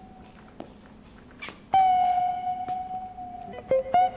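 Sparse background music on guitar: a single note struck a little before halfway that rings on and slowly fades, then a few quick notes near the end.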